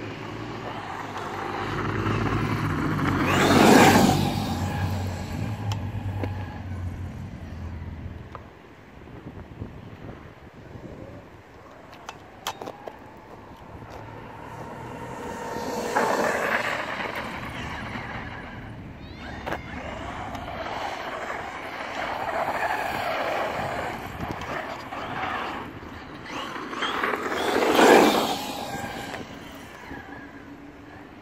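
Traxxas X-Maxx electric RC monster truck on a 6S LiPo battery, its brushless motor whining and its tyres rushing over paving and gravel as it drives around. It swells loud three times as it passes close to the microphone.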